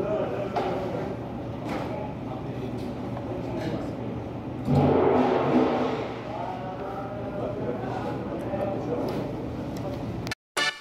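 Indistinct voices talking in a large, echoing room, with a louder stretch of sound about five seconds in.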